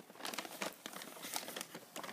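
Brown paper takeout bag crinkling and rustling as hands open it and reach inside, a quick irregular run of paper crackles.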